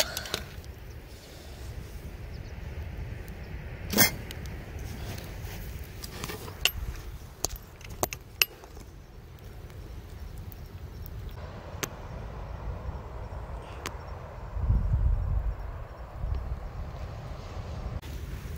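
Open wood fire crackling with scattered sharp pops and clicks, the loudest about four seconds in, over a low rumble of wind on the microphone that swells briefly about fifteen seconds in.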